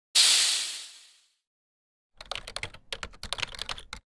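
Logo-animation sound effects: a sudden hissing burst that fades out over about a second, then, after a short silence, a rapid irregular run of crackling clicks.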